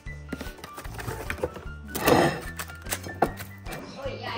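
Background music with a steady beat over the crinkling and tearing of plastic cling wrap being pulled over a salad bowl, with a loud rustle about two seconds in and a few small clicks.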